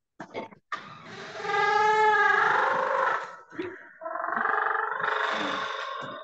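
Construction machinery noise: a motor-driven machine running with a whine that rises and then falls in pitch for about two seconds. It drops briefly to a few knocks, then runs again from about four seconds in.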